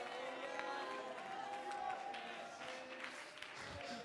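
Faint congregation sounds, scattered voices and a little clapping, under a soft held musical chord.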